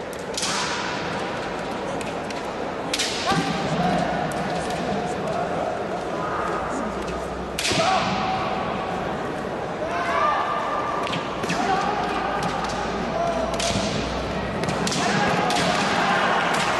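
Kendo bout at close quarters: sharp knocks of bamboo shinai striking and clashing, together with the fencers' drawn-out kiai shouts, recurring every few seconds, with a loud knock and shout about eight seconds in.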